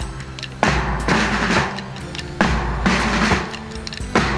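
Police brass band playing: sustained brass notes over snare and bass drums, with several heavy drum strikes.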